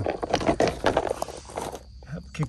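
A plastic cover being lifted off a charger lying on gravel: an irregular run of crunching, scraping and clattering that dies down near the end.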